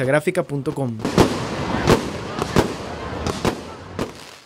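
Fireworks going off: from about a second in, four sharp bangs less than a second apart over a steady crackling hiss.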